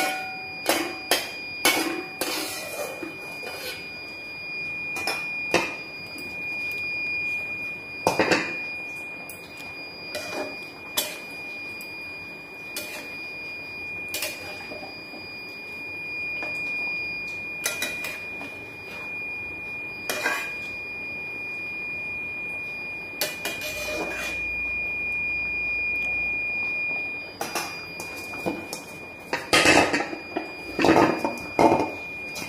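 Fish curry bubbling in a metal kadhai on a gas stove, with scattered pops and clicks, over a steady high-pitched tone.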